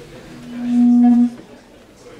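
A loud, steady low electronic tone that swells in over about half a second, holds for about a second, then cuts off suddenly.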